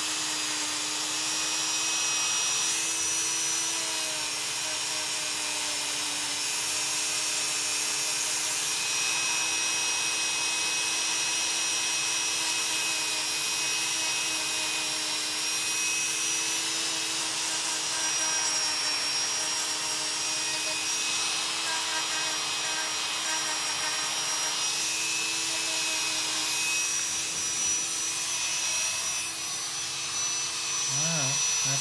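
Podiatrist's electric rotary nail drill with a small burr running continuously as it grinds down thickened fungal toenails, giving a steady high whine that shifts slightly in pitch now and then.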